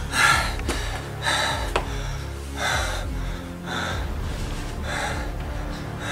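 A man breathing heavily in sharp gasps, about one breath a second, over a low droning film score.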